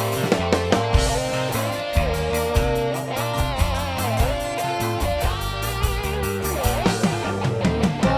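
Live band playing an instrumental passage with no vocals: electric guitars and a bending, wavering lead melody over bass and a steady drum beat.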